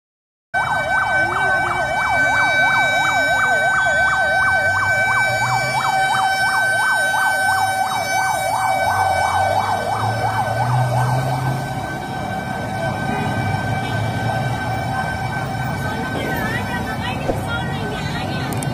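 Fire engine siren on a fast yelp, its pitch sweeping up and down about three times a second, starting half a second in and stopping about eleven seconds in, with a steady high tone sounding alongside it throughout.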